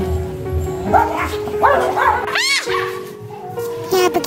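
Background music with a steady held note, over several short dog barks and yelps between about one and two and a half seconds in, the last the loudest.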